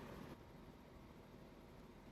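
Near silence, with only a faint low background rumble.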